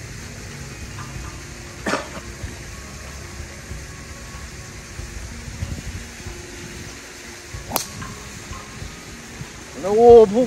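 A golf driver strikes a ball off the tee with one sharp crack near the end. A shorter sharp sound comes about two seconds in, over a steady low background noise.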